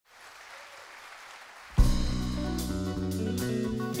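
Faint audience applause, then less than two seconds in a full live band comes in together on one loud hit and plays on with sustained chords and cymbal strokes.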